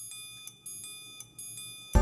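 Soloed triangle part from a studio multitrack, which the presenter thinks is programmed rather than played live: a few light strikes, each ringing on with high, bell-like overtones.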